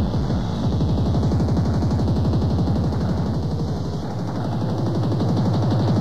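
Hardcore tekno DJ mix: in place of a steady kick, a fast stream of rapidly repeated low hits runs on, with a held bass tone joining underneath about four seconds in.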